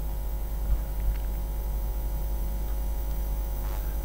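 Steady low electrical mains hum on the recording, with a couple of faint clicks about a second in.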